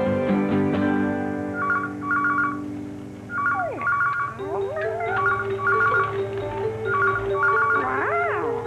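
A telephone rings with a repeated double ring, over background music with a plucked bass line. Sliding, swooping tones come in about four seconds in and again near the end.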